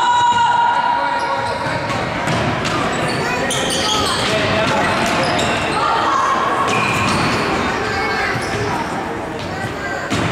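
Futsal ball being kicked and bouncing on the wooden floor of a large sports hall, with short high shoe squeaks and players' shouts echoing around the hall.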